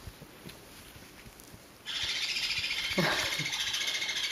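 Young green-cheeked conures break into sudden, loud, harsh squawking about two seconds in: the squabbling of birds bunched together competing for attention. Before that there are only faint soft rustles.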